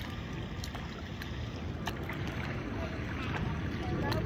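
Wind buffeting a phone's microphone, a steady low rumble, with light splashing of pool water and a few short clicks.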